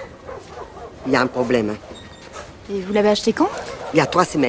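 A puppy whimpering and yipping, mixed with brief voice sounds, in two short spells about a second in and around three seconds in.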